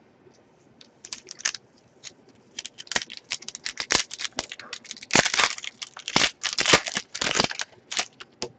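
Wrapper of a hockey card pack being crinkled and torn open by hand: a run of irregular crackles and rustles, sparse at first and densest in the second half.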